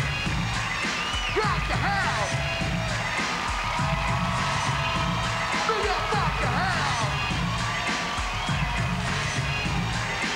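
A hip-hop beat playing live over a concert PA: a pulsing heavy bass and hi-hat ticks, with high pitched tones that swoop and slide up and down over it. A crowd cheers underneath.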